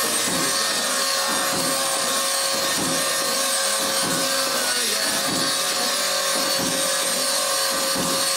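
Handheld angle grinder grinding metal and throwing sparks: a steady harsh rasp with a constant whine.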